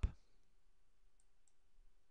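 Near silence: faint room tone with a low steady hum, and two faint short ticks a third of a second apart, about a second in.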